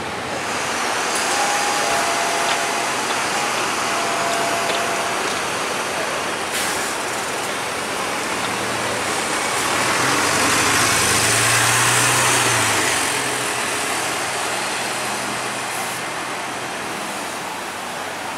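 Mercedes-Benz Citaro city bus running, heard from inside the cabin as a steady wide hiss. About halfway through, the engine note rises and grows louder as the bus pulls away, then eases off.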